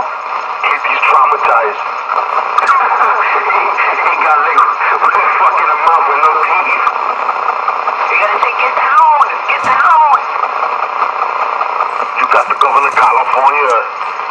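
Several voices talking over one another, thin-sounding and with no words clear.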